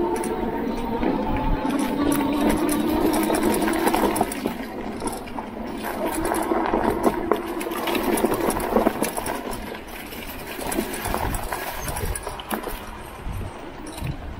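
Electric bike's motor whining under pedal assist, strongest in the first few seconds as the bike picks up speed, with tyres running over a leaf-strewn dirt trail and frequent clicks and rattles from the bike over bumps.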